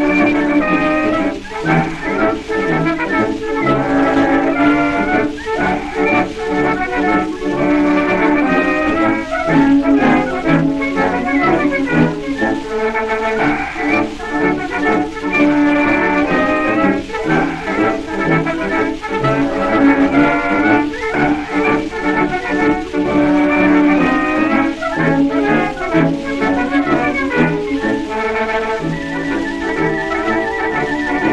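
Military band playing a march, brass to the fore, played back from an acoustic-era shellac 78 rpm record of about 1910. The sound is narrow and boxy, with a faint steady surface hiss behind the band.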